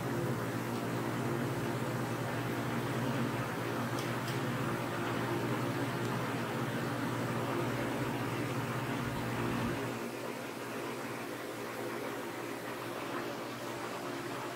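Steady hum of a walk-in cooler's refrigeration fans, which gets quieter about ten seconds in.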